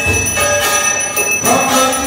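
A temple hand bell rings continuously for the aarti over devotional music, with strikes about once a second and a low beat near the start. Held musical tones come in about a second and a half in.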